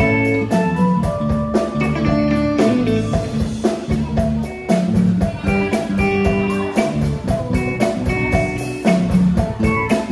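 Live band playing an instrumental passage: a drum kit keeps a steady beat under guitar and long held melody notes.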